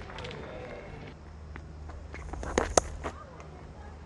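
Cricket-ground ambience through the broadcast stump and field mics: a steady low hum with faint voices, and a few sharp knocks about two and a half seconds in, the loudest a cricket bat striking the ball as the next delivery is played.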